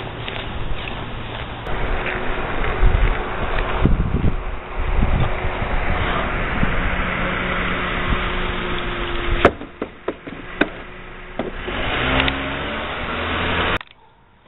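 A compact sedan driving past on a street, its engine and tyre noise going on steadily. About two-thirds of the way through come a few sharp knocks.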